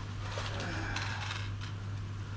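Steady low hum with a faint wash of moving water from the koi pond's circulation, with a few light clicks and clinks of small items being handled at the pond edge.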